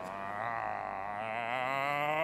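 Operatic bass-baritone voice singing a held, wavering note with wide vibrato.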